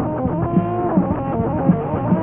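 Heavy metal band playing an instrumental passage: electric guitar lines over bass and drums, with a held guitar note about half a second in.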